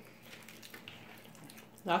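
Faint wet mouth sounds of a person eating a forkful of chicken pot pie, with small soft clicks. A woman's voice starts just before the end.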